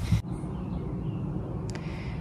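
Steady low rumble of outdoor background noise, with no machine tone in it, after a voice stops in the first moment.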